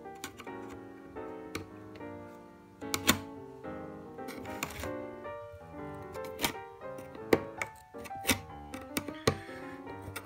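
Irregular sharp clicks, about a dozen, as a rivet-removal tool pops the factory rivets off a MacBook keyboard plate, over steady background music.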